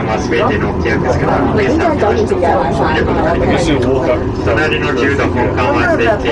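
Several people talking at once, overlapping chatter throughout, over a steady low rumble inside a moving ropeway cabin.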